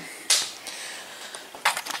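Faint clicks and rustles of a handheld camera being moved about, with a short hiss about a third of a second in.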